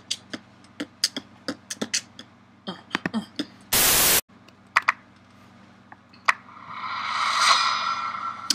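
Sparse sharp clicks, then a half-second burst of loud TV-static hiss about four seconds in, used as a video transition. Near the end a layered swell of sound rises steadily.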